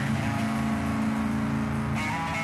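Live rock band playing, led by electric guitar with bass and drums, holding steady sustained notes.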